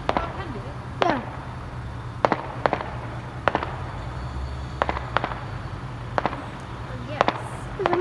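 Distant fireworks going off: sharp bangs and pops at irregular intervals, about ten in all.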